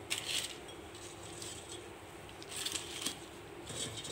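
Crisp breaded chicken strips being handled into a parchment-lined bowl: short bursts of paper rustling and crackling near the start, about two and a half seconds in, and near the end.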